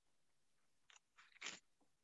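Near silence, broken by a few faint short clicks in the middle, the clearest about a second and a half in.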